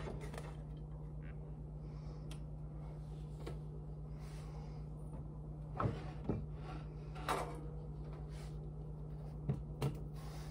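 A few short knocks and clatters of a utensil against a frying pan of browning kielbasa, starting about six seconds in, with two close together near the end, over a steady low hum.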